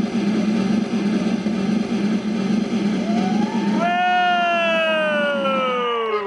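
Show accompaniment for an acrobatic balancing act: a steady, rapid drum roll building suspense. About four seconds in, a long falling tone like a slide whistle glides down over it as the performer goes up into the handstand.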